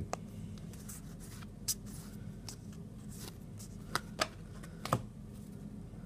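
Trading cards being handled and slid one past another in the hand: a few soft, scattered flicks and taps over a steady low hum.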